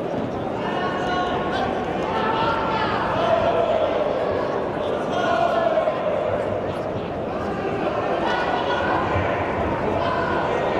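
Crowd and cornermen at a kickboxing bout shouting and calling out, many voices overlapping without a break, with a few dull thuds of blows and footwork in the ring.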